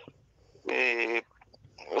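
A man's voice holding a drawn-out hesitation sound, like 'ehh', for about half a second before he goes on speaking, heard over a phone-in line.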